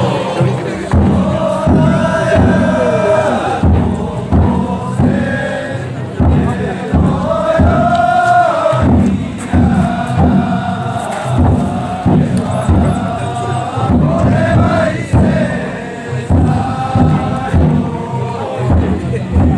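A group of men chanting a danjiri festival song in long, wavering held notes, their voices rising and falling together, with scattered knocks between the phrases.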